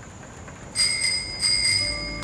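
Bicycle bell on a tandem bicycle, rung twice about two-thirds of a second apart, each ring clear and lingering.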